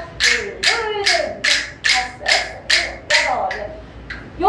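Wooden rhythm sticks struck in a steady beat: about nine sharp clacks, a little over two a second, with a woman's voice between the strikes.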